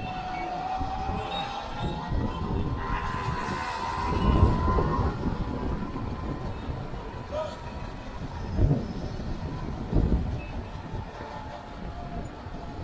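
Sur-Ron electric dirt bike's motor whining while riding, its pitch climbing over the first few seconds as the bike speeds up, then holding steady. Wind buffets the microphone in gusts, loudest about four seconds in and again near the end.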